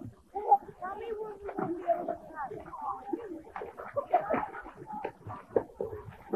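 Indistinct voices of children and adults, high-pitched calls and chatter with no clear words, running throughout.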